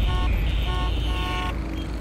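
A car horn honking three times, two short toots and then a longer one, over a steady low rumble of city traffic.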